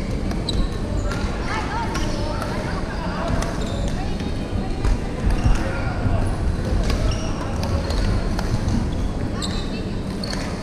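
Busy badminton-hall ambience: a background of many people's voices, with scattered sharp clicks of shuttlecocks being hit and short high squeaks of shoes on the court floor from the neighbouring courts.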